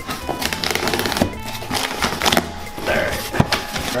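Background music, with crackling, tearing and rustling from a cardboard shipping box and its packing tape being opened by hand. One sharp click stands out about three and a half seconds in.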